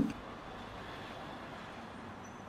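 Faint, steady road-traffic noise with no single vehicle standing out.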